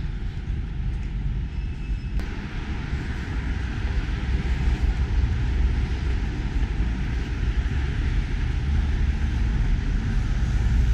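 Wind buffeting a handheld action-camera microphone: an uneven low rushing with a steady hiss above it, and a brief click about two seconds in.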